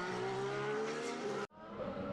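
Formula 1 cars' turbocharged V6 engines heard from trackside, the pitch gliding slowly as a car runs. The sound cuts out abruptly about one and a half seconds in, then fades back up with another engine note.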